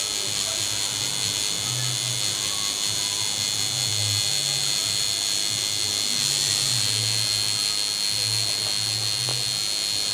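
Electric tattoo machine buzzing steadily as the needle works into the skin, with a constant high whine.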